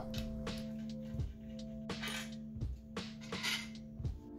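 A series of sharp metallic clicks and clinks, about one every second or less, from a socket wrench breaking loose the main girdle bolts on a Honda K24 engine block, over background music with a held chord.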